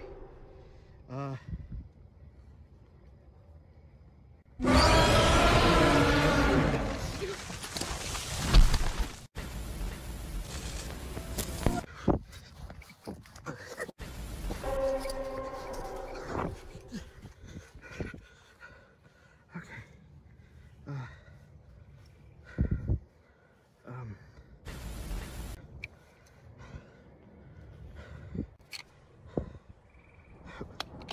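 A large creature's roar, added as a sound effect, bursts in loudly about five seconds in and lasts about four seconds. Scattered rustles and knocks of someone moving through brush follow, with hushed breathing.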